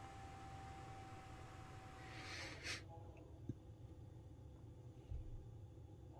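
Very quiet room tone, with a faint steady hum for the first two seconds and a short swell of hiss that cuts off abruptly. A single faint click comes about three and a half seconds in.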